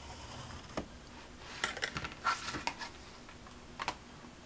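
A score tool scratching along cardboard against a ruler, then a scatter of light clicks and knocks as the ruler and journal cover are handled and set down in a new place.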